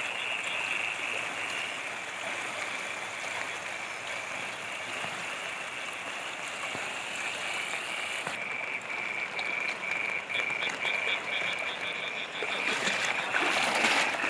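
A chorus of frogs calling steadily over the rush of flowing floodwater; about halfway through, a call repeats as a regular run of short pulses.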